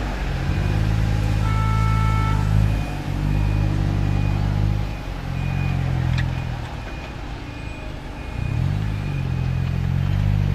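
Alexander Dennis Enviro200 single-deck bus pulling away, its diesel engine note dropping and picking up again as the gearbox changes up, with a rising rev near the end. A faint short beep repeats about twice a second through most of it.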